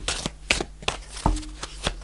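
Tarot cards handled and shuffled by hand: a handful of short, soft card flicks and taps spread over two seconds.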